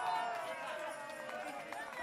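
A man shouting one long, drawn-out call that slowly falls in pitch, with other voices calling around it on the pitch.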